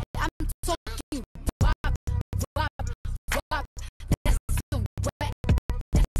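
Background music chopped on and off into rapid stutters, several cuts a second, with pitch glides sliding up and down through it.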